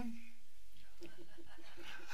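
Soft chuckling laughter: a quick run of short pitched pulses in the second half, after a spoken phrase trails off at the start.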